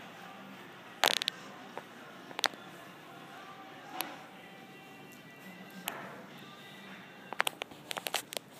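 Background music playing faintly over a store's sound system. A few sharp clicks and knocks cut through it, the loudest about a second in, with a quick run of clicks near the end.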